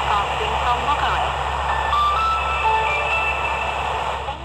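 A Radio Romania International shortwave broadcast on 17630 kHz playing through the small speaker of an XHDATA D-219 portable radio, over a steady background hiss. A voice is heard at first, then a few long held notes at different pitches.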